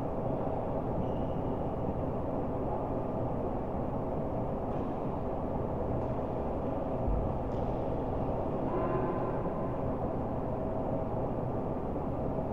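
Steady low rumbling noise with a faint hum running under it, and a couple of faint sharp taps about five and seven and a half seconds in.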